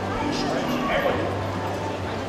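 Short shouted calls and yips from people cheering the horse on, over a steady low hum.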